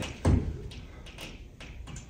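A single dull thump about a quarter second in, followed by four faint, light taps spaced roughly half a second apart.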